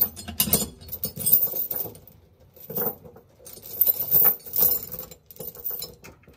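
Steel tie-down chains rattling and clinking as they are handled on a trailer deck, in irregular bursts.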